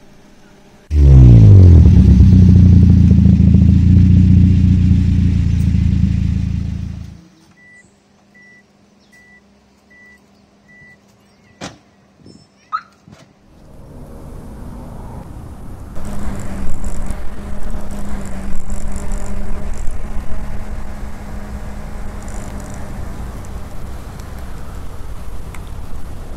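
Car engine starting about a second in, its pitch rising as it revs and then running steadily until it cuts off sharply around seven seconds. A quiet stretch with a run of faint, evenly spaced beeps and a couple of clicks follows, then engine noise rises again and continues.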